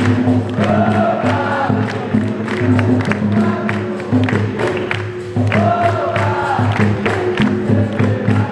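Capoeira roda music: a group singing together over the bateria's percussion, with the seated circle clapping along in a steady rhythm.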